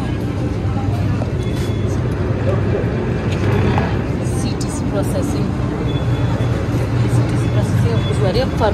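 Tea-factory machinery running with a steady low hum, with faint voices of people around it.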